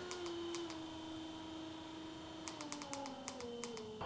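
MotorGuide Xi3 electric trolling motor spinning its prop out of the water, a faint, very quiet whine that steps down in pitch several times as its speed drops. A few light clicks come in the second half.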